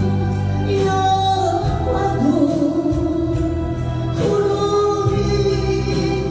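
A woman sings into a microphone in long held notes over an amplified backing track with a steady bass and beat.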